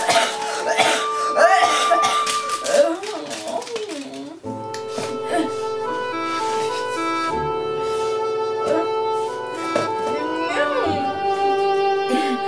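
Light instrumental background music with steady held notes. Over it, a girl's voice makes wordless sick noises for the first four seconds or so and again near the end.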